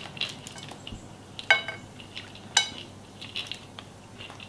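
Cashew pieces rattling and clicking in a tilted glass jar as they are shaken out onto a salad, with two sharper glassy clinks about a second apart near the middle.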